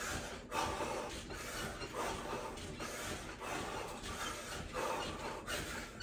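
A woman breathing hard and rhythmically from exertion, each breath a soft rush about once a second.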